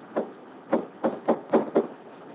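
Pen stylus knocking and tapping against the surface of a SmartBoard interactive whiteboard during handwriting: about six short, irregular knocks in two seconds.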